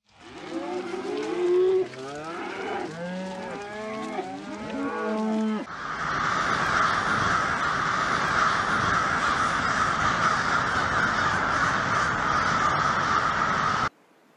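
A herd of cattle mooing, several calls overlapping, for the first five or six seconds. Then a sudden change to a dense, steady chorus of calls from a large flock.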